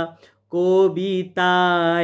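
A man singing a melody line unaccompanied, in held notes with small pitch steps. There is a brief break just before half a second in, and a long held note in the second half.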